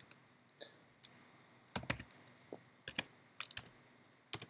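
Keystrokes on a computer keyboard: irregular, separate clicks coming in small bursts with short pauses between them, as a terminal command is typed.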